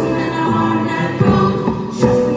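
Mixed school choir singing in parts, with a few hand-drum strokes from a djembe underneath.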